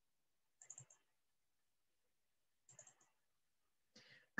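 Near silence, broken twice by a brief burst of faint computer clicking about two seconds apart, as a presentation slide is advanced.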